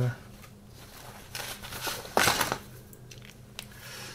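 Brief rustling and handling of a paper instruction sheet and a plastic kit sprue, with a short, louder rustle about two seconds in.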